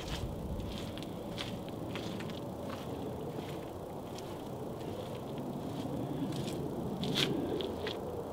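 Faint, irregular footsteps over a steady low background noise, with one sharper step about seven seconds in.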